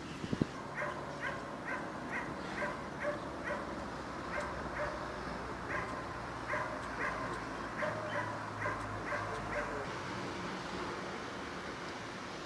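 Cats mewing: a run of short, high calls about two a second that stops about ten seconds in.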